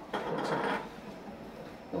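Hand rubbing and sliding a rolled paratha dough round across a wooden rolling board: one short scraping rub lasting under a second, near the start.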